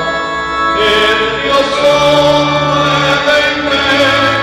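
Sacred choral music: voices sing a slow hymn in long held chords, moving to a new chord about every second.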